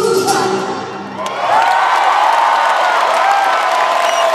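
A live rock band's final notes die away about a second in. Then a large arena crowd cheers, whoops and applauds.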